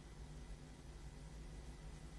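Quiet room tone: a steady low hum with a faint thin tone and light hiss, no distinct events.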